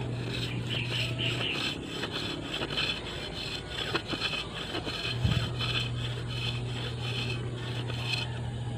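A knife shaving a thin bamboo kite spar in quick, repeated scraping strokes. The strip is being thinned and rounded so that it bends evenly.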